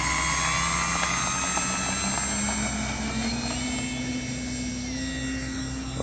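Electric motor and propeller of a Durafly Spitfire foam RC model at takeoff power: a continuous high whine, its pitch climbing slightly near the start and shifting a little as the model takes off and climbs away.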